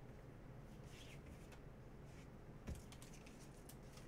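Faint handling of a trading card and a clear plastic card sleeve: scattered light clicks and scrapes, with one soft knock a little under three seconds in.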